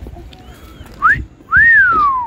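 A person's wolf whistle: a short rising whistle about a second in, then a longer one that rises and glides down.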